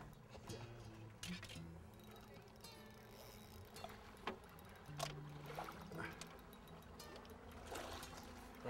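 A hooked redfish splashing at the water's surface beside the boat: a series of short, faint splashes scattered through, with faint voices underneath.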